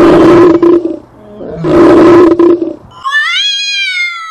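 A male lion roaring twice, two loud, rough calls about a second apart. Near the end comes a high, drawn-out call that rises and then falls in pitch.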